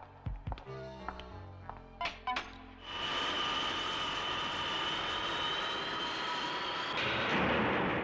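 Sparse background music with a few sharp clicks for about three seconds, then a loud, steady electronic hiss with high whistling tones held over it, a science-fiction sound effect that swells near the end.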